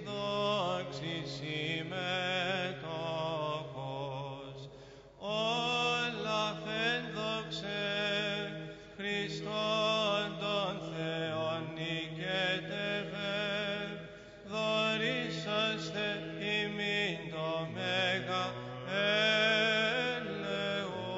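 Byzantine chant: a slow, ornamented vocal melody held over a sustained drone (the ison). There are short breaks between phrases about five seconds in and again near fourteen seconds.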